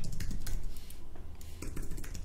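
Typing on a computer keyboard: a run of quick, irregular keystrokes.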